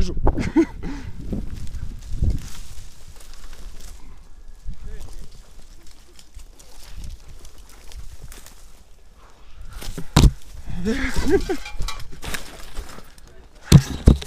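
Rustling and knocking on a body-worn action camera, with a sharp knock about ten seconds in and another at the very end as a hand grabs the camera. Muffled voices are heard near the end.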